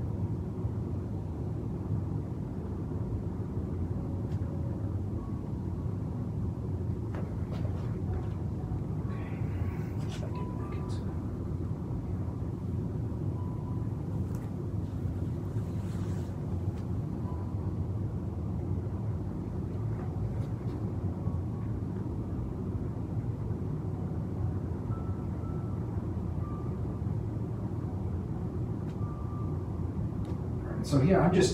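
Steady low background rumble of room noise, with a few faint clicks scattered through it.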